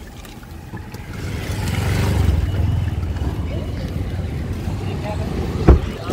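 Street traffic noise with a low rumble that builds after about a second, then one sharp, loud thump near the end: a car door being shut.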